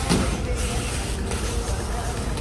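Quad roller skate wheels rolling on a hardwood floor, a steady low rumble as the skater works through crossover footwork.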